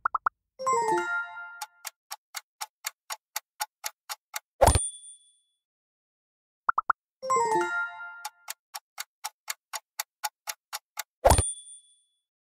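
Quiz-game sound effects, played twice: a quick triple blip, a short falling jingle, then a fast countdown of clock-like ticks lasting about three seconds. Each countdown ends on a loud hit with a high ringing ding that marks the answer reveal.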